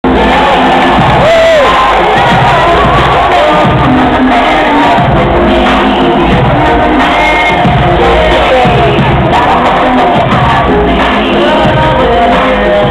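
Wrestlers' entrance music playing loud over an arena sound system, with a large crowd cheering and shouting over it.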